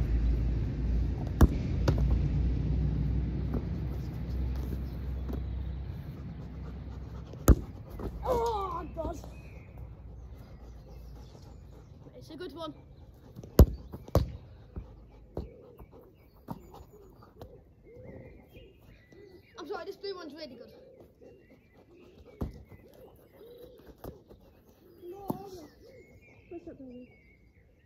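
A football being kicked and struck on grass: several sharp thuds a few seconds apart, over a low rumble that fades away over the first six seconds.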